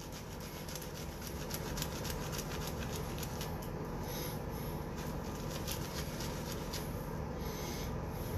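A silvertip shaving brush is swirled over a puck of shaving soap in a tub to load it: a steady, scratchy rubbing made up of fine, rapid clicks.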